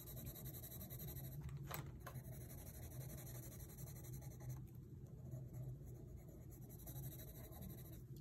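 Faint, steady scratching of a coloured pencil shading on sketchbook paper in quick back-and-forth strokes.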